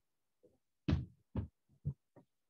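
Three dull thumps about half a second apart, with a fainter one before them, from a stylus striking a tablet screen during handwriting.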